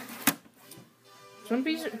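A single sharp knock as a mobile phone is handled against the hard plastic top of a printer, about a quarter second in, with faint steady musical tones underneath.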